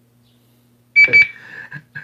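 Two short, high electronic beeps in quick succession about a second in, the loudest sound here, followed by a brief quieter sound, over a faint steady electrical hum.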